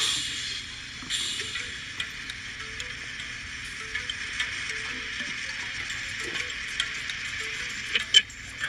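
Eating sounds from a played-back eating-challenge video: scattered small clicks and crackles over a steady hiss, with faint background music.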